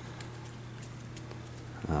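Puppies' claws ticking faintly and irregularly on a tile floor as they walk and play.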